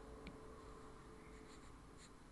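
Very faint sounds of a stylus writing on a tablet's glass screen: a small tap just after the start and soft scratches about one and a half seconds in, over a faint steady hum.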